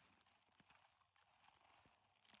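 Near silence: a faint hiss with a few faint, scattered clicks.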